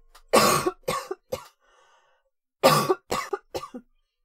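A woman coughing in two bouts, each a hard cough followed by two or three smaller ones.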